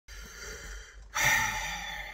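A man's long, heavy sigh, a loud breath out starting about a second in, weary and exasperated.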